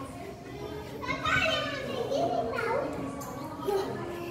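Young children's voices at play: short high-pitched calls, one about a second in and another near three seconds.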